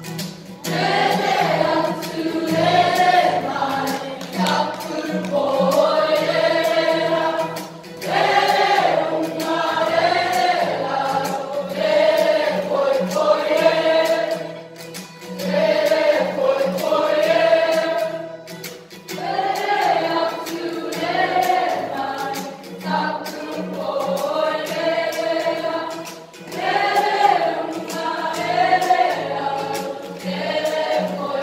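School kapa haka group singing a waiata poi together in long phrases with brief breaks between them, accompanied by light, regular taps of poi striking.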